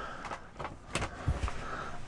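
A light switch clicked on once, about a second in, amid faint handling rustle and a few soft low knocks.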